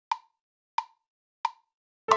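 GarageBand's metronome counting in before recording: three short ticks at an even 90 beats per minute, about two-thirds of a second apart.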